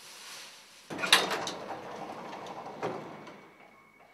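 Old passenger lift's sliding doors opening: a sudden loud clack about a second in, then a rattling slide with a second knock, dying away near the end.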